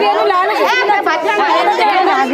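A group of women talking and calling out over one another in loud, lively chatter.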